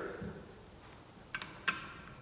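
Two light metallic clinks with a short ring, about a second and a half in: a bolt and metal washer knocking against the steel pressure-pot lid as they are fitted.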